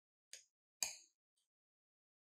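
Metal fork knocking against a ceramic bowl while mashing soft herb butter: two short clinks about half a second apart, the second louder, then a faint tick.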